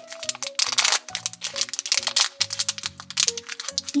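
Foil blind-bag wrapper crinkling and crackling as it is opened by hand, over light background music.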